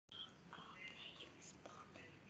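Near silence with faint whispered speech.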